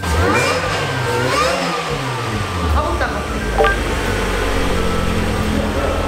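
Subaru Vivio RX-R's supercharged 660 cc four-cylinder engine being revved on the dyno. Several rising revs come in the first two seconds, then it settles into a steady low drone.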